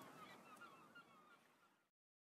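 Faint repeated bird calls, short chirps that fade away and cut to silence near the end.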